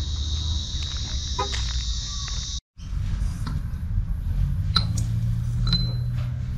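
Steady high-pitched insect chorus over a low rumble, cut off abruptly about two and a half seconds in; after that only a low hum with a few faint clicks.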